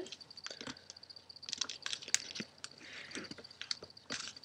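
Thin origami paper being folded and creased by hand: faint crinkling with scattered small clicks as fingers press the fold flat.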